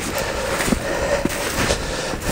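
Footsteps in wet snow and clothing brushing through twigs and undergrowth as a person walks: an even rustling noise with a few soft knocks.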